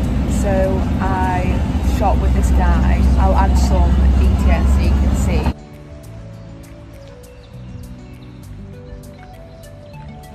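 Low road and engine rumble inside a moving vehicle, under a woman's talking. About five and a half seconds in it cuts off suddenly to quieter background music with held notes and a light, regular beat.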